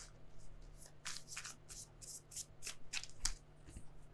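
Tarot cards being shuffled and handled by hand: a string of faint, short papery swishes and taps.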